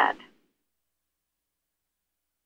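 The end of one spoken word in the first instant, then complete silence.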